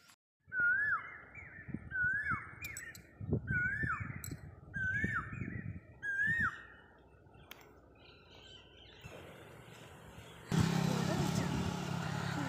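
A bird calls five times, each a whistled note that rises and falls followed by a higher trailing note, repeated about every second and a half, over low handling rumble. Near the end a louder steady noise with a low hum comes in.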